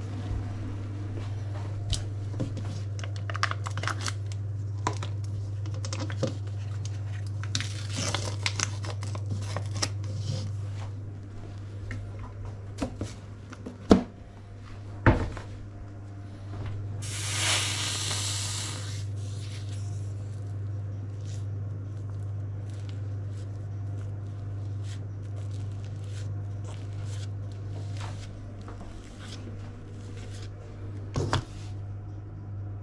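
Kitchen handling noises over a steady low hum: scattered light clicks and knocks, two sharp knocks about halfway through, then a couple of seconds of rustling just after.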